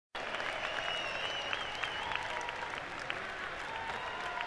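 Concert audience applauding and cheering, a dense steady patter of clapping, with a high wavering whistle from the crowd about a second in.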